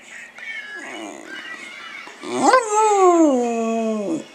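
A shaggy-coated dog howling: one long howl starting about halfway through, rising quickly in pitch and then sliding slowly down until it breaks off.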